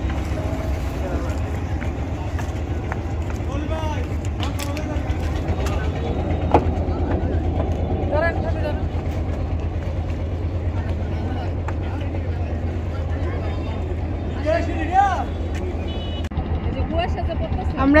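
A wooden river boat's engine idling with a steady, fast low throb, with people's voices over it.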